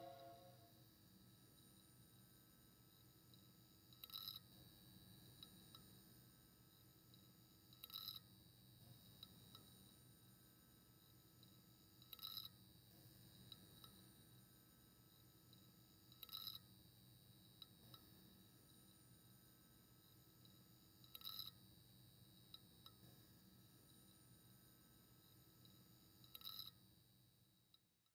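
Near silence after background music fades out at the start: a faint steady hum, with a soft short blip about every four seconds.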